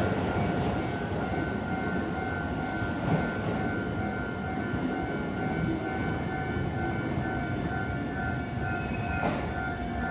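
Keisei 3000 series electric train dying away after pulling out of the station: its loud running noise just before fades to a steady rumble, with a thin steady whine over it.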